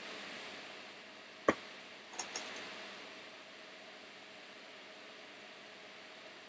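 Quiet room with a faint steady hiss, broken by one sharp click about a second and a half in and a few faint ticks a moment later.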